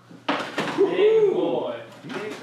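A man's voice in a long, drawn-out exclamation, starting sharply about a third of a second in, its pitch rising and falling.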